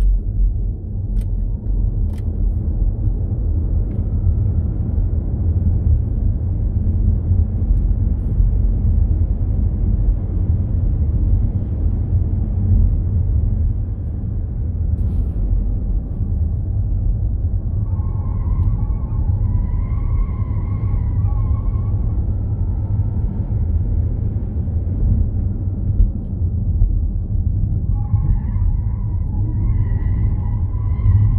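A Ford Mustang Mach-E GT electric car at speed on a race track, heard from inside the cabin: a steady low rumble of road and wind noise. A wavering squeal of tyres under cornering load comes in about 18 seconds in for a few seconds, and again near the end.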